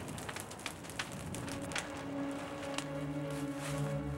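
Crackling and popping of a large fire, with sharp pops scattered through the first two seconds. Low, sustained music notes come in about halfway and swell near the end.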